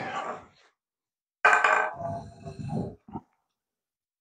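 A man's voice in a brief muttered, unworded vocal sound lasting about a second and a half, following the end of a spoken phrase.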